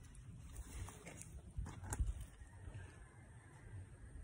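Footsteps and hand-held phone handling noise while walking on garden ground: an irregular low rumble with a few sharper knocks, the loudest about two seconds in.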